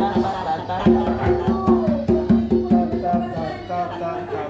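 A hand drum with a skin head struck by hand in a steady rhythm of ringing open strokes, about three a second, with a voice over it.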